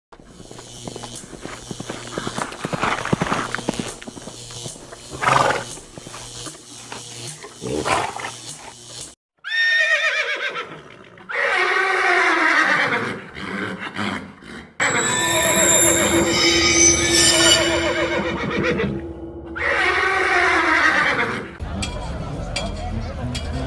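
Horse whinnies as intro sound effects over music, several long falling calls.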